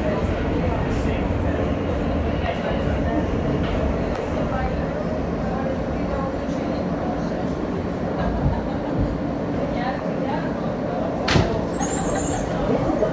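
Inside a New York subway car, a steady low rumble of wheels and running gear as the train slows along an elevated station platform. There is one sharp click near the end.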